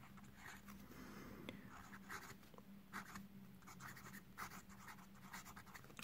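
Faint scratching of a Lamy Studio All Black fountain pen's medium steel nib on Rhodia paper, in short irregular strokes as words are written. The nib is one the writer finds a little scratchy.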